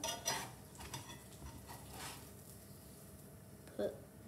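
Metal spatula scraping and knocking against a frying pan as a cooked beef burger patty is lifted out. A few short clinks, the loudest right at the start and fainter ones over the next two seconds.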